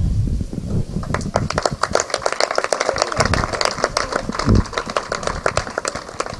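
Applause from a small crowd: many separate hand claps overlapping, starting just after the opening and thinning out toward the end.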